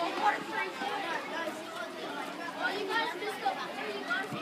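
Background chatter of several people talking at once at a distance, with no single clear voice.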